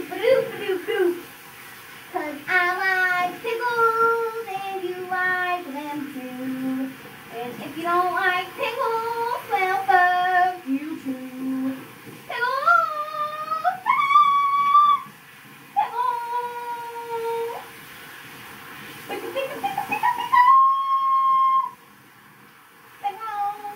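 A child singing without clear words, sliding between notes and holding several long notes in the second half.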